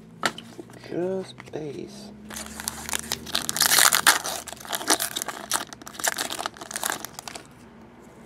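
A foil trading-card pack being torn open and its wrapper crinkled by hand, in a dense run of crinkles and tears from about two seconds in until just before the end.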